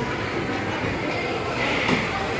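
Steady rushing background din of a buffet restaurant and its open kitchen, with no distinct single sound standing out.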